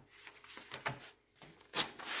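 A sheet of printer paper rustling and sliding as it is repositioned on a paper trimmer, in a few short rustles with the loudest near the end.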